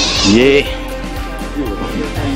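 A man's single drawn-out syllable "ye…", rising and then falling in pitch, over a steady background music bed.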